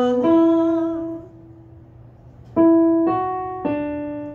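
Electronic keyboard playing single notes for a sing-back ear-training drill: a sung "la" ends near the start over a fading note, then after a short pause three notes are played about half a second apart, each ringing and fading.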